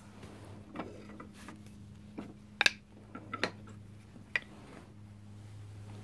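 Knapping tools being picked up and handled, an antler billet and a white plastic rod: a handful of light, separate clicks and knocks, the sharpest about two and a half seconds in, over a low steady hum.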